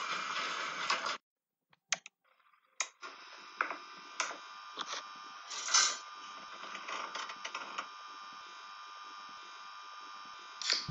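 Intro music cuts off about a second in. After a short near-silence with a couple of clicks, a steady electrical hum and hiss comes in, with scattered short knocks and bumps.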